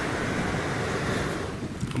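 Steady rushing noise of strong wind over the microphone, mixed with the sea's surf, easing off near the end.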